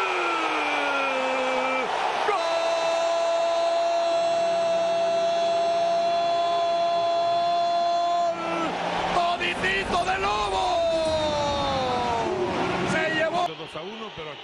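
Spanish-language football commentator's drawn-out goal cry: one held note of about six seconds, then more excited calls that rise and fall in pitch.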